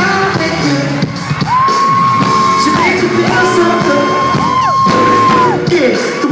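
Live R&B vocal group and band performing in a concert hall, heard from the audience, with three long high held notes that slide up into each note and down out of it over the music.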